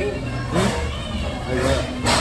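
A woman's wordless, rising and falling whimpering and moaning through a mouthful of hot dumpling, over a low restaurant room hum.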